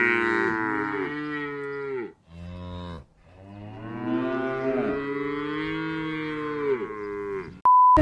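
Cow mooing sound effect: a long low moo ending about two seconds in, a short one, then another long moo that sags in pitch. A brief steady electronic beep comes just before the end.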